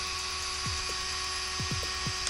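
A steady faint electrical hum and whine, with a few faint short sounds that fall in pitch.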